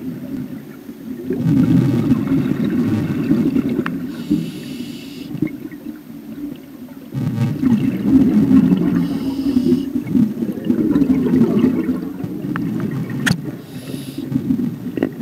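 Scuba regulator breathing underwater: hissing inhalations alternate with long bubbling exhalations a few seconds apart. A sharp click sounds near the end.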